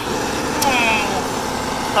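Diesel engine of a John Deere 9620RX four-track tractor idling steadily at close range. A short falling 'ah' from a man's voice about half a second in.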